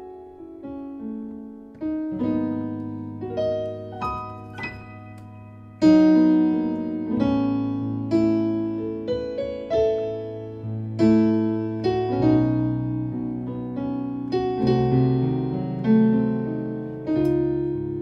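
Piano playing a slow progression of altered gospel chords, each chord struck and left to ring. A louder chord comes about six seconds in.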